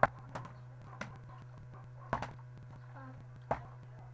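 A plastic drink bottle being flipped and landing on a wooden table: a series of sharp knocks at uneven intervals, the loudest at the start and a double knock about two seconds in. A steady low hum runs underneath.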